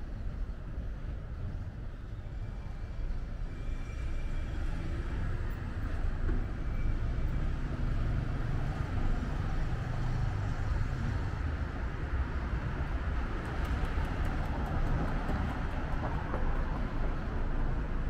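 Town street traffic noise: vehicles passing and running nearby, a steady low rumble that grows somewhat louder in the second half.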